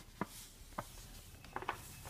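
Faint kitchen handling sounds: a few light clicks and soft rustles of packaging as a paper flour bag and food wrappers are handled over a plastic bowl.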